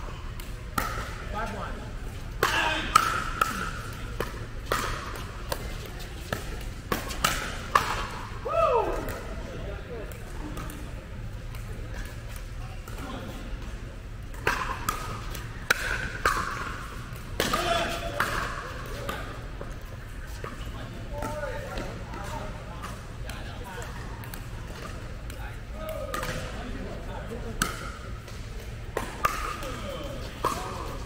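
Pickleball rally: many sharp pops of paddles striking the plastic ball and the ball bouncing on the hard court, some in quick runs, in a large indoor hall, with players' voices in between.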